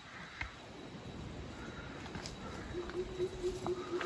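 Footsteps on a rocky forest trail, with faint knocks throughout. From about three seconds in, an animal gives a run of low, evenly repeated hoots on one pitch, which the hikers take for a monkey.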